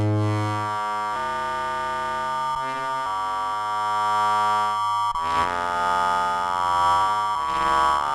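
EML 101 vintage analog synthesizer playing held notes, the pitch stepping to a new note every second or two while its knobs are turned to reshape the tone. The sound grows brighter about five seconds in.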